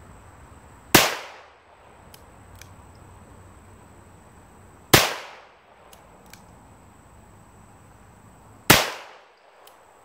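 Three single shots from a Smith & Wesson 317 Kit Gun, an aluminium-framed .22 LR revolver, about four seconds apart. Each is a sharp crack that dies away within about half a second, with faint clicks between the shots.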